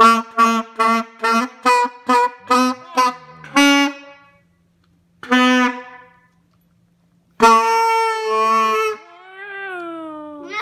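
Saxophone played by a beginner: a quick run of about ten short, evenly repeated notes, then after a pause one short note and a longer held note.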